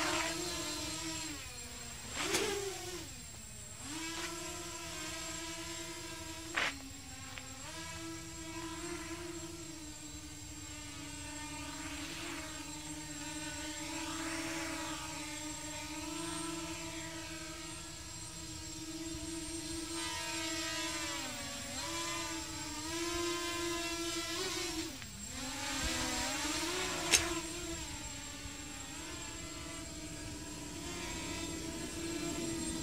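Small toy quadcopter drone's motors and propellers whining, the pitch dipping and climbing again several times with throttle changes. Three sharp knocks, the loudest near the end.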